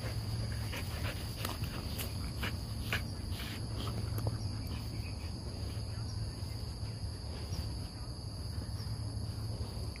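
Two golden retriever puppies play-wrestling on grass: scattered soft clicks, jaw snaps and rustles, busiest in the first few seconds. A steady high insect chorus and a low hum run underneath.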